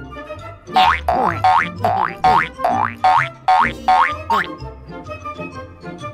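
Cartoon background music with a rapid string of about nine rising, springy 'boing' sound effects through the first four and a half seconds.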